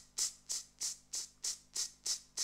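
A person imitating a straight rock cymbal beat with the mouth: a steady, even run of short 'tss' hisses, about three a second, the even feel of a straight beat as opposed to swing.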